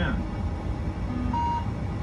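Boeing 747-8 ground proximity warning computer's synthetic voice finishing the 'ten' radio-altitude callout during its self-test, over a steady low cockpit hum. About one and a half seconds in, a short single-pitch beep sounds.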